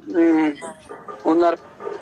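Speech only: a man talking in short drawn-out phrases with brief pauses between them.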